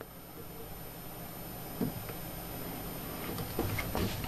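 Quiet room hum with a soft knock about two seconds in and a few light clicks near the end: a hand handling the metal guide rod of an Edge Pro–style knife sharpener, with a digital protractor clamped to it.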